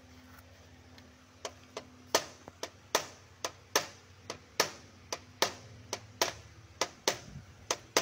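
Light hammer taps on the metal crimp tabs of a Proton Saga radiator's header plate, folding them down to clamp the tank onto the core. A run of about twenty sharp knocks, two to three a second, begins about a second and a half in.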